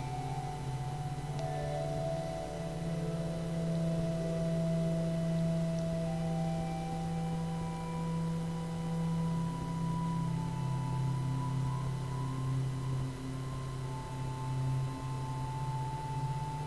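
Organ playing quietly in slow held chords: a deep, steady bass under higher notes that change every few seconds.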